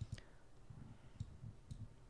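A few faint computer mouse clicks, with soft low knocks, as pages are navigated in a document viewer.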